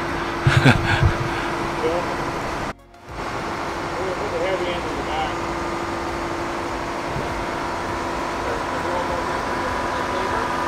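Heavy diesel engine idling steadily with a constant hum. The sound cuts out briefly about three seconds in.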